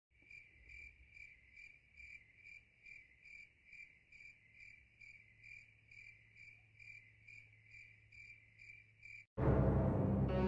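A cricket chirping evenly, about two high chirps a second: the stock 'crickets' sound effect for silence with no jokes. Just before the end it cuts off and a sudden loud burst of music takes over.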